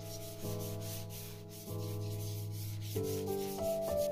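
A cloth rubbed in strokes over paper on a monoprint, under slow background keyboard music whose chords change about every second and a quarter.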